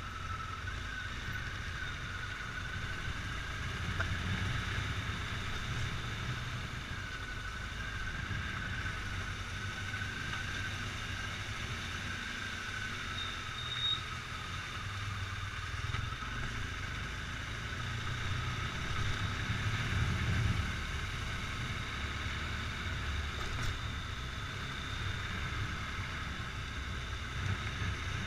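Motorcycle engine running at low road speed, a steady low rumble that swells a little with the throttle, loudest about twenty seconds in.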